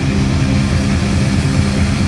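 Live hard rock band: heavily distorted electric guitar and bass playing a low, dense riff. The cymbals drop out for this stretch.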